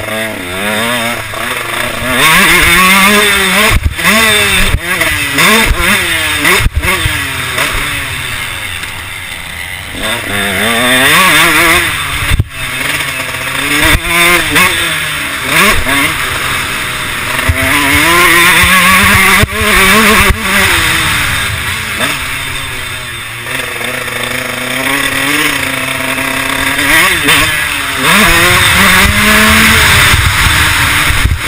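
A 2012 KTM 150 SX single-cylinder two-stroke motocross engine being ridden hard. Its pitch climbs in quick repeated sweeps through the gears and drops off again and again, with a few loud full-throttle stretches and occasional sharp knocks.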